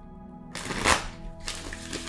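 A tarot deck being handled and shuffled by hand, with papery rustling bursts starting about half a second in and a shorter one later, over soft background music.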